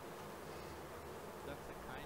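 Faint, steady background hiss and hum in a pause between sentences of speech.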